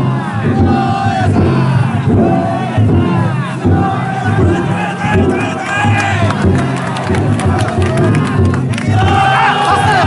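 A dense crowd of men shouting and chanting together: the bearers of a Harima autumn-festival float (yatai) calling out as they heave its carrying poles.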